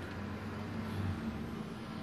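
Steady low background hum with no clear events.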